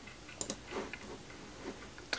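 Faint clicks of a computer mouse: two quick clicks about half a second in, then a few softer ticks.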